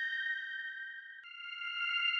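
Background music: a few sustained high tones held together, changing to a new chord a little over a second in, slowly swelling and fading in loudness.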